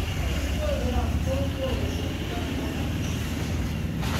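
Steady low background rumble with faint distant voices.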